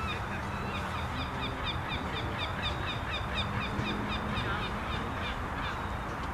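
A bird calling in a fast run of short, high chirps, about four a second, that stops about five seconds in, over a steady low hum.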